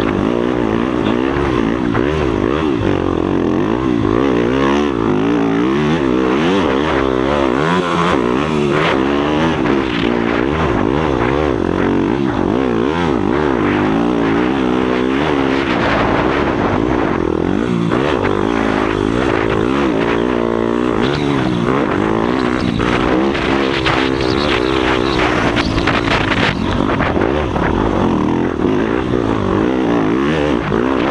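Yamaha motocross bike engine being ridden hard, heard close from an onboard camera, its pitch rising and falling again and again as the throttle is worked and gears are changed.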